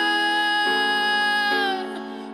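Slow, emotional music: one long held high note over sustained chords that change twice beneath it, the held note falling away near the end.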